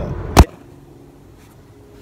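Low car-cabin rumble broken off by a single sharp, loud knock less than half a second in, followed by quiet room tone with a faint steady hum.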